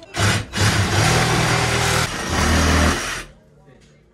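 Handheld power saw cutting through wooden wall boards, run in three bursts with brief pauses, then stopping.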